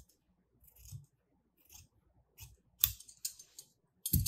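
Scissors snipping the edge of a fused interfacing stencil sheet: several short, separate cuts, the loudest about three seconds in.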